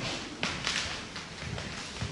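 Rustling and handling noises with a few soft thumps, the loudest burst about half a second in.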